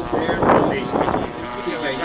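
People talking close by. From about halfway through, the steady drone of a radio-controlled model warbird's engine comes in under the voices.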